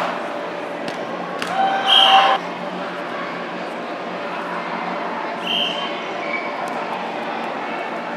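Indoor arena sound of a children's soccer game: a child's loud held shout about two seconds in and a shorter call later, over a steady hall hum, with a few sharp knocks of the ball being kicked.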